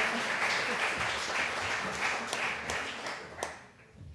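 Audience applause in a lecture hall, many hands clapping at once, dying away in the last second.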